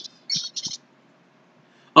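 Three short, high-pitched chirps about half a second in.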